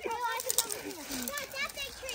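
Children's voices talking outdoors, high-pitched and too indistinct for the words to be made out.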